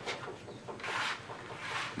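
A few soft scrapes and rustles of dry, half-baked streusel crumbs being pushed across a baking tray with a metal scraper, turning them over so they brown evenly.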